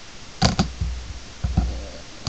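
Plastic trading-card holders handled and set down on a desk: sharp plastic clicks with dull thumps, a pair about half a second in and another around a second and a half.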